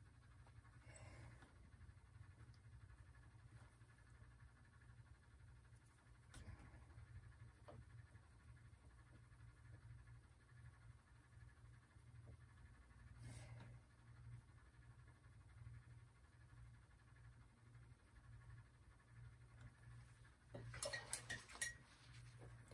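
Near silence: a low steady hum with a house cat faintly heard in the background, a few scattered faint ticks, and a short run of light clicks near the end.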